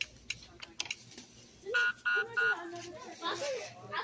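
Three short electronic beeps from a store checkout's point-of-sale equipment, evenly spaced about a third of a second apart, after a few light clicks.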